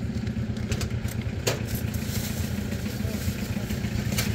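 A small engine running steadily at idle, a low, fast-pulsing rumble, with a short sharp click about a second and a half in.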